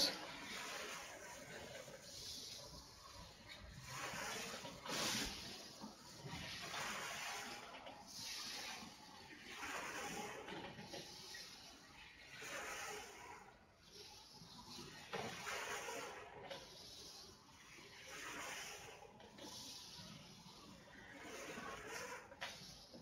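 Faint breathy hissing swells of air, one every two to three seconds, from a person sitting close to a webcam microphone.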